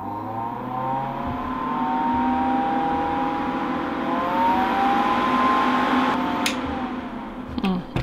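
Saviland nail dust collector's suction fan running, a steady whirring hum with a whine over it, quite a lot of sound. It grows louder over the first couple of seconds, then fades after a click about six and a half seconds in.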